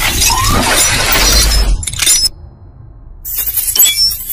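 Logo-reveal sound effects from an animated intro: a dense noisy crash over a deep bass that cuts off about two seconds in, then a short glass-shattering effect near the end as the logo appears.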